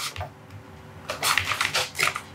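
Cardboard and plastic box packaging being handled: starting about a second in, a quick run of crackling, clicky rustles.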